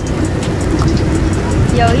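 Steady low rumble and hiss of outdoor background noise beside a car, with no rhythm. A woman's voice breaks in near the end.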